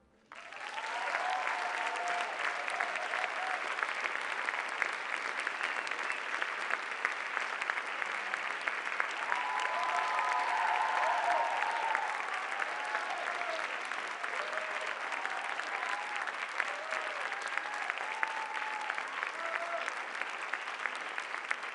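Audience applause, starting a moment in after the music stops, dense clapping with scattered whoops and cheers over it.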